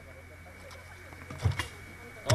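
Faint voices over a steady hum, with a single dull knock about one and a half seconds in.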